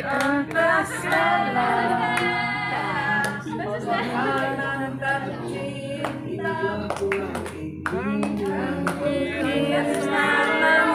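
A group of women singing together unaccompanied, with hand clapping.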